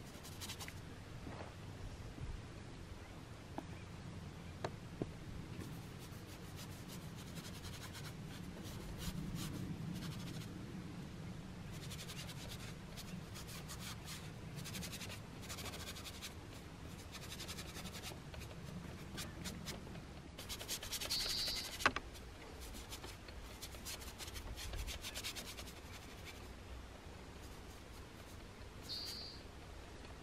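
Oil paint being worked onto a painting panel with a palette knife and brush: faint scratchy rubbing strokes in runs of a second or two, over a low steady rumble.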